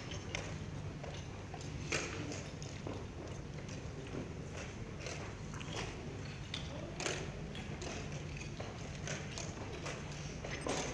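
Irregular clicks and knocks of chess pieces being set down and chess clocks being pressed at many boards during blitz games, over a steady low hum. The sharpest knocks come about two seconds in and again about seven seconds in.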